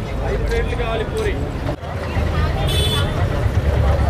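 Crowd of people talking over one another, with a steady low hum underneath and a brief high-pitched squeal about three seconds in.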